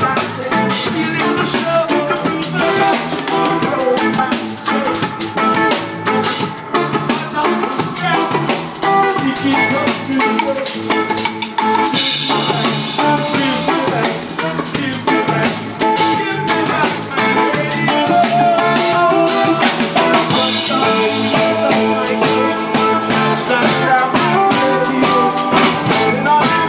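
Live band playing a reggae song: drum kit, electric guitar, bass and keyboard, with a steady drum beat throughout.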